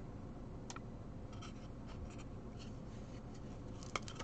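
Diamond painting coasters handled and shuffled against one another: faint rubbing with a few soft clicks and one sharper click near the end.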